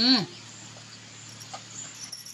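A woman's short hummed "hmm" with her mouth full of food, rising then falling in pitch, in the first moment; after it only a faint steady low hum.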